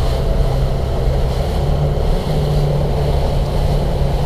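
Boat engine running steadily just above idle, its note stepping up slightly about a second and a half in, with wind noise on the microphone.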